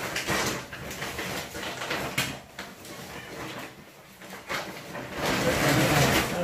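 Scraping and rustling as large woven plastic-bag bundles are pushed and shifted across a tiled floor, with a sharp knock about two seconds in and louder scraping near the end.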